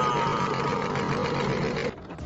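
Cartoon car engine sound effect, its pitch sliding slowly downward, cutting off abruptly just before the end.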